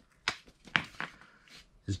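Worn engine mounts being handled: a few light knocks and clicks of metal and rubber as one mount is turned over in the hands and another is picked up.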